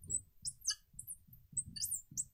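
Marker squeaking on a glass lightboard while writing an equation: a series of short, high squeaks, one per pen stroke, spread through the two seconds.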